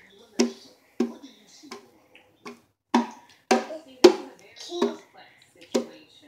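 A guitar's strings being struck or strummed unevenly by a small child, about nine short twangs at irregular intervals, each dying away quickly.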